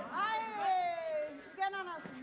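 A person's long drawn-out shout, falling slowly in pitch over about a second, followed by a shorter call near the end.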